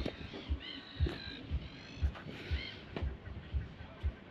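Footsteps on a wooden pier deck, soft even thumps about two a second. Faint high bird calls come twice, about a second in and again midway.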